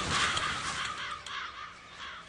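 Crows cawing, a rapid run of harsh calls several a second, fading toward the end.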